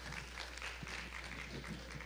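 Faint, scattered applause from a church congregation, made of irregular individual claps with no music under it.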